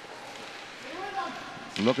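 Ice-rink ambience under the commentary: a steady faint hiss of the arena, with a brief faint distant voice about a second in. The commentator starts speaking near the end.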